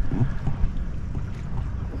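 Wind buffeting the microphone: a steady low rumble, with a brief voice fragment right at the start.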